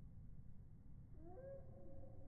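A faint, drawn-out animal call beginning just over a second in, rising in pitch and then held.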